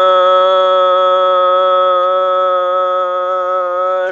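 A man singing one long note, held at a steady, unchanging pitch without a break.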